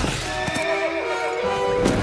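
Horse whinnying over an orchestral film score, with a couple of sharp knocks.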